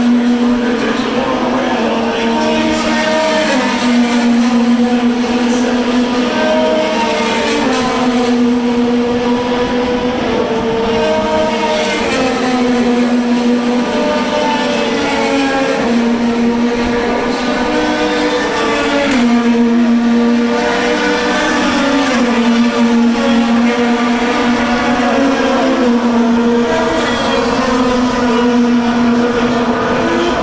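IndyCar race cars' twin-turbocharged 2.2-litre V6 engines running hard through the road course, one after another, with no break. Their pitch steps up and down every second or two as the drivers shift through the gears.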